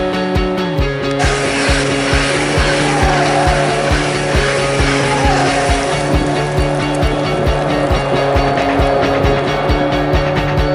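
Background rock music with a steady beat, mixed with the running noise of an electric multiple-unit passenger train arriving at a platform, starting about a second in, with a couple of brief squeals.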